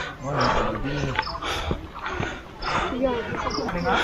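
A man breathing hard through his mouth while hiking up a steep trail, a run of quick, audible breaths in and out, out of breath from the climb. Voices are faint behind.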